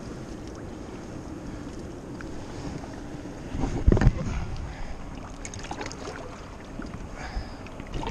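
Steady rush of Niagara River water with wind on the microphone, one loud thump about four seconds in, and a few small handling knocks.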